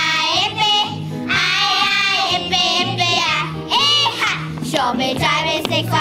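A group of young children singing a song in English together over a recorded backing track with a bouncing, repeating bass line.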